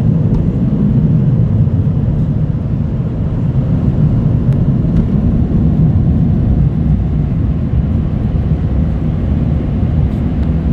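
Car wash air-dryer blowers running: a loud, steady rush of air, heard from inside the car's cabin.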